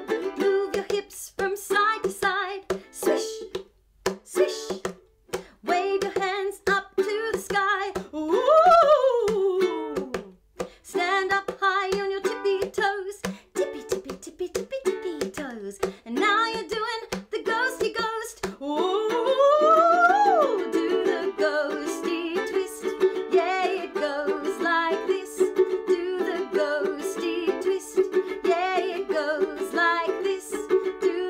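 A children's sing-along song played on a fast-strummed ukulele with singing. Twice, about a third and two-thirds of the way through, a voice slides up in pitch and back down in one long swoop.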